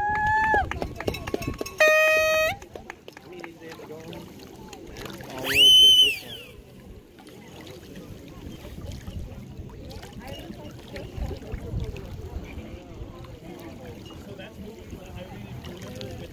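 Spectators whooping and shouting cheers for a racing canoe: held, high-pitched whoops in the first couple of seconds and a loud rising whoop about five and a half seconds in. Afterwards only a quiet background of faint distant voices remains.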